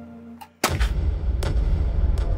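A sudden deep boom about half a second in, a dramatic hit from the soundtrack, carrying on as a loud sustained low rumble under tense music.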